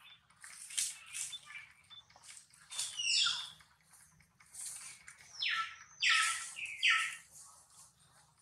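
A few short, harsh animal calls, each sweeping down in pitch, about four of them from around three seconds in, among brief high rustling sounds.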